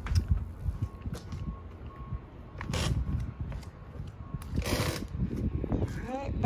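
Footsteps thudding on the trailer's rubber-matted aluminium side-load ramp as someone walks down it, with a faint repeating beep, like a vehicle's reversing alarm, in the first two seconds. Two brief rushes of noise come around the middle and near the end.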